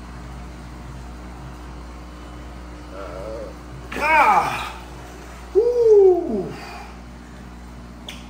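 A man's startled cry of "God!" about four seconds in, followed by a longer hooting "ooh" that rises and then falls in pitch: his reaction to an electric shock from an electric eel. A steady low hum runs underneath.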